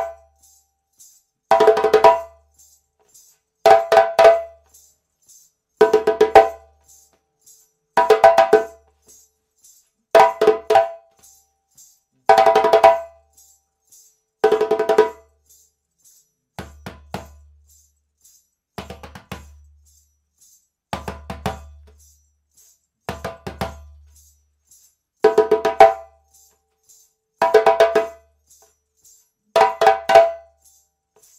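Djembe played by hand in short half-bar call phrases of tones, slaps and bass strokes, each about a second long, followed by a second-long gap left for the response, repeating about every two seconds. A faint even ticking runs beneath.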